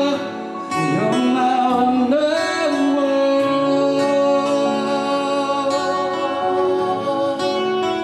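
Live band music: a man singing, with a sliding vocal phrase about a second in that settles into held notes, over acoustic guitar and band accompaniment.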